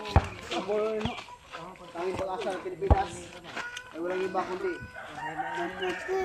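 Roosters crowing several times, with people's voices underneath and a couple of sharp knocks, one near the start and one about three seconds in.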